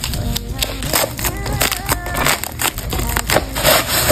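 Pink plastic bubble mailer being peeled and torn open by hand: an irregular run of crinkling and ripping, loudest near the end, over background music.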